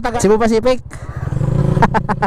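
Open-pipe motorcycle engine running at low revs, a steady low pulsing exhaust note that gets louder about halfway through.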